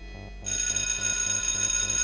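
Electric school bell ringing, starting suddenly about half a second in and holding steady.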